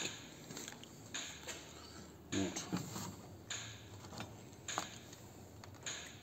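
A few soft knocks and clunks, about five, spaced roughly a second apart, over quiet workshop room tone.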